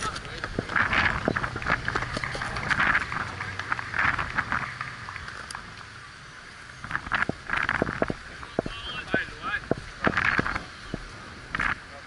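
Indistinct shouts and calls from cricket players across the field, coming in short bursts several times, picked up by a body-worn action camera. Scattered knocks and rubbing sounds from the camera on the umpire's body, with a low rumble that eases about halfway through.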